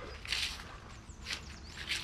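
Footsteps of a person walking on woodland grass and leaf litter, a few soft steps. Faint bird chirps sound in the background.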